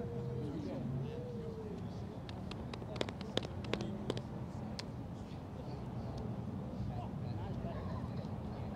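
Outdoor field ambience: faint distant voices of players early on over a steady low rumble, with a few sharp clicks about three to four seconds in.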